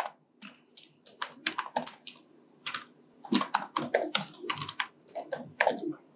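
Typing on a computer keyboard: a run of uneven, quick keystrokes as a short phrase is typed.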